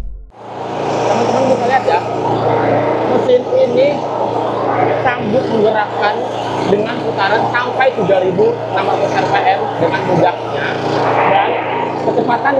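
Firman SFE460 four-stroke 458 cc boat engine running steadily under way at sea, a steady low drone under a man's talking.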